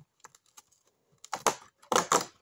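Cardboard advent calendar door being pushed open by hand: a few light clicks, then two louder crackling scrapes in the second half.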